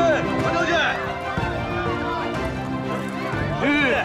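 A street crowd shouting “General Hang!” over steady drama background music, with horses’ hooves clopping as a mounted column passes. A loud call rises and falls near the end.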